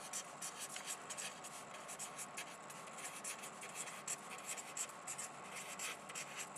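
Handwriting: a steady run of quick, irregular, scratchy pen strokes, as an equation is written out.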